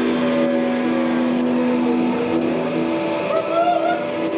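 Live band with distorted electric guitars and bass holding sustained notes in a dense, droning wash, with a rising pitch slide near the end.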